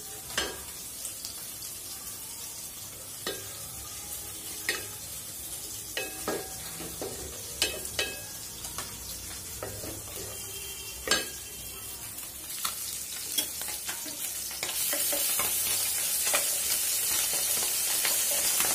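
Wooden spatula stirring a frying masala in a metal pot, knocking against the pot now and then over a light sizzle. About three-quarters of the way in it gives way to a louder, steady sizzle of small fish frying in hot oil in a pan.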